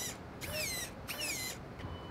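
RC truck's electric steering servo whining as the front wheels are turned lock to lock from the transmitter, testing the steering throw: three short whines, each falling in pitch.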